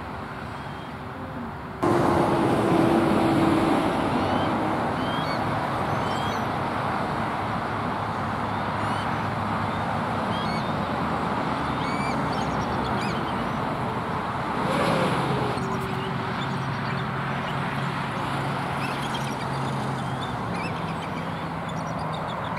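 Steady rumble of passing road traffic, stepping up suddenly about two seconds in and swelling once more a little after halfway, with small birds chirping faintly above it.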